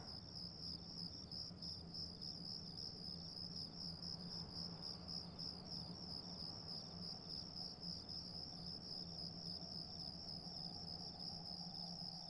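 Crickets chirping in a steady, rapidly pulsing trill, with a faint low hum underneath.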